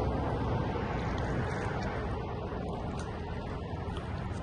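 Steady wind rumbling on the microphone by open water, with a few faint ticks.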